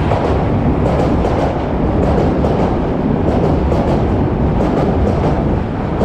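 Osaka Metro Midosuji Line train pulling into an elevated platform, its cars rolling past close by with a steady loud rumble and a light clatter of wheels over the rails.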